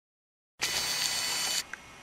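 Short intro sound effect as the logo comes into focus: about a second of loud hiss with a steady high whine in it, dropping suddenly to a quieter tail with a small click before it stops.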